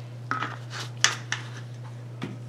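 A few short clicks and scrapes of small plastic items being handled off-picture, over a steady low electrical hum.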